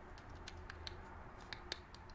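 Faint, light clicks and taps of plastic as a Ford remote key's circuit board is handled and pressed into its plastic casing, about half a dozen small ticks at uneven intervals.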